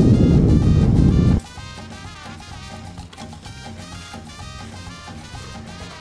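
Loud rushing wind and engine noise from a motorcycle being ridden, for about the first second and a half, cutting off suddenly. Background music with a steady beat follows.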